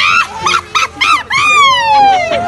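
People howling and whooping: a quick rising-falling cry, a run of short cackling cries, then one long falling howl.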